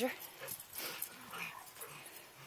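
Faint, brief sounds from dogs, with the tail of a loud call cutting off right at the start.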